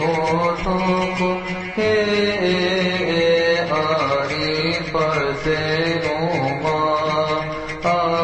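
A cantor chanting a melismatic Coptic church hymn, the voice drawing out long notes with gliding turns over a steady low held tone.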